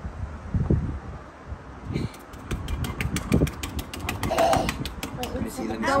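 A sponge dabbed over and over on a wet, freshly painted table top: a quick, irregular run of soft taps starting about two seconds in. A few low rumbles come before it.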